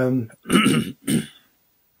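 A man clearing his throat twice, two short rough rasps about half a second apart.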